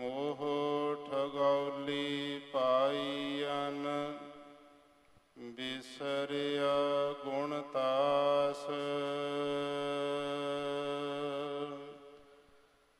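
A single voice chanting Sikh gurbani in long, held melodic notes. There are two phrases, with a short break a little before halfway.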